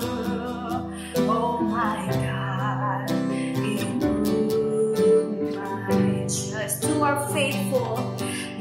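Worship song: a woman singing, with some held notes wavering in vibrato, over strummed acoustic guitar and keyboard.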